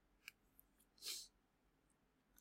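Near silence: room tone, with a faint click and a brief soft hiss about a second in.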